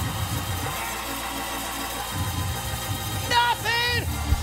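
Soft sustained church organ chords under a low congregation murmur. Near the end a voice calls out briefly in a cry that bends in pitch.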